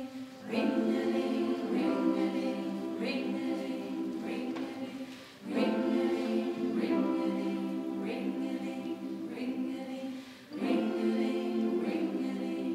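Mixed pop choir singing long held chords to a grand piano accompaniment. It comes in three phrases about five seconds apart, each loud at its entry and then fading.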